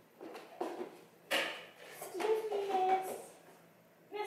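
A few light knocks, then a short breathy vocal burst about a second in, followed by a high-pitched voice holding one wordless sound for about a second.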